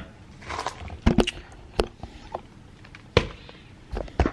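Handling noise as a camera is set down and things are moved about right by it: a few sharp knocks, about a second in, near two seconds and just after three seconds, with soft rustling in between.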